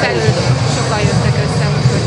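A steady low engine drone running throughout, with people's voices talking over it.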